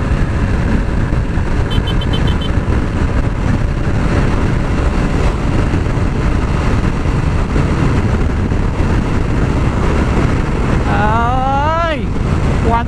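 Heavy wind rush over the microphone and the steady drone of a 2020 Yamaha NMAX scooter's engine held at full throttle near its top speed on the stock CVT, the speed creeping up slowly.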